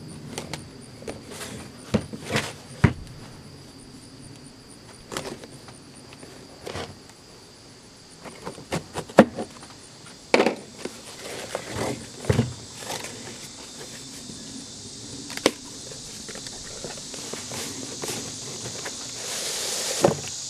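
A cardboard shipping box is cut open and handled: a knife slits the packing tape, then flaps and an inner box are pulled out, with scattered knocks, scrapes and rustles of cardboard on a plastic table. A steady high insect drone runs underneath and grows louder near the end.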